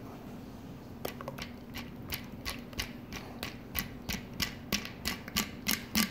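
Ice cubes knocking against the inside of a metal cocktail shaker as it is tipped and tapped to get the last eggnog out. The sharp clicks come about three a second from a second in and grow louder towards the end.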